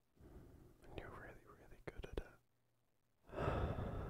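A man's close-miked breathy whispering and murmuring, with two or three quick lip smacks near the middle. After a short pause, a loud, long breath out begins near the end.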